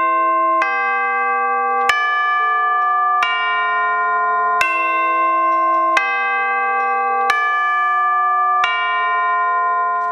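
Musser orchestral chimes (tubular bells) struck with rolled-rawhide hammers, playing a slow melody: seven ringing notes about one every second and a third, each note's ring stopping as the next is struck.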